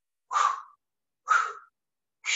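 Two short, sharp exhales by a man, about a second apart. The paced breathing is timed to each push of an alternating dumbbell chest press.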